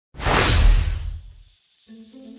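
A whoosh sound effect with a deep low rumble, for the light streak of the title animation. It swells in almost at once and fades out over about a second, and a few music notes begin just before the end.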